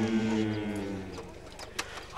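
Men's voices holding a low, steady chanted note, which fades out a little past a second in. A short sharp click comes near the end.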